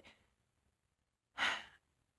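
A woman's short, audible breath about a second and a half in, after a pause in her speech.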